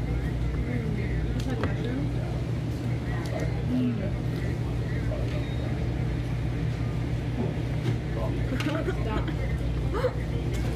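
Restaurant room tone: a steady low ventilation hum with faint background voices and a few light clicks.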